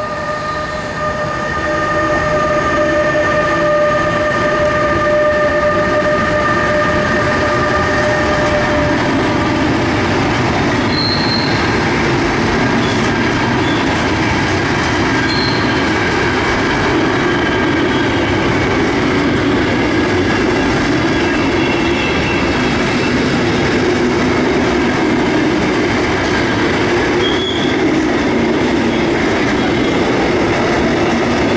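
Pair of Crossrail BR 186 (Bombardier TRAXX) electric locomotives passing at the head of an intermodal container freight train. A steady whine from the locomotives fades out after about nine seconds. The rolling rumble and clatter of the container wagons goes on, with a few brief high wheel squeals.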